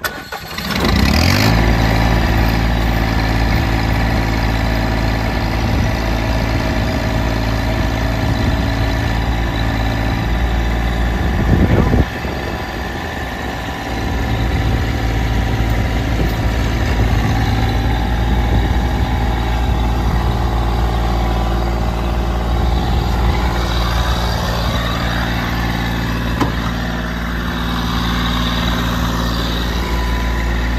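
Massey Ferguson GC1700-series sub-compact tractor's three-cylinder diesel engine starting about a second in, then running steadily. The engine sound dips briefly around twelve seconds in and comes back up about two seconds later.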